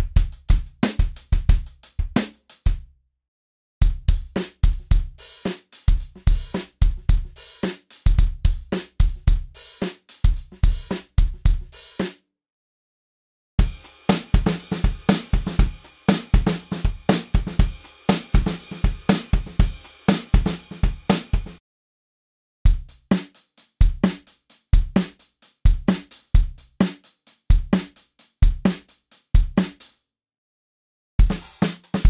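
Sampled acoustic drum-kit grooves: full drum loops played back in turn, each several seconds long, with short silences between them. The tempo steps up from one loop to the next, from about 98 to about 130 bpm.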